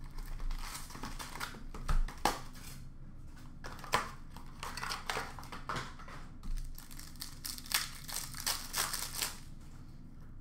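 Cardboard trading-card box and its paper packaging being torn open and crumpled: a continuous run of rustles, tears and crinkles, with sharper crackles about two and four seconds in.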